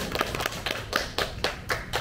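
Scattered applause from a few people, with separate claps at several per second that thin out near the end.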